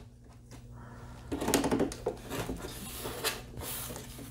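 Plastic parts of a Transformers action figure rubbing and clicking as it is handled and posed, faint at first, then busier from about a second and a half in.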